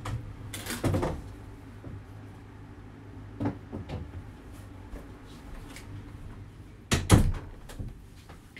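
Door of a closet opening and closing, with a few knocks and bumps of handling; the loudest is a double thump about seven seconds in.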